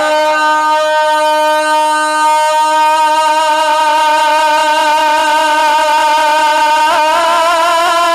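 A male naat reciter holding one long sung note without words, steady for about seven seconds, then breaking into wavering ornamental turns near the end.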